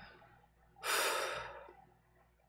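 A man's sigh: one breathy exhale close to the microphone, starting about a second in and trailing off over about a second.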